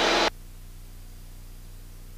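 Faint steady hiss with a low hum, the background of an aircraft intercom audio feed, after a spoken word tails off just after the start.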